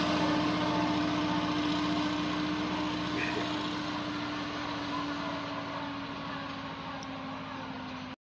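Wheel loader's diesel engine running at a steady pitch as the loader drives off carrying a boulder in its bucket, getting gradually quieter as it moves away.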